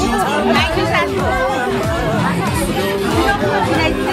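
Music playing with several people chattering over it, the voices overlapping.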